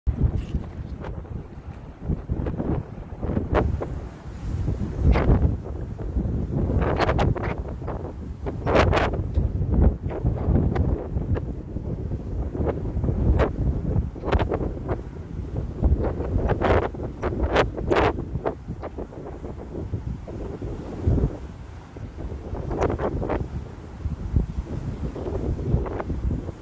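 Wind buffeting a phone's microphone, a low rumbling noise that surges in irregular gusts.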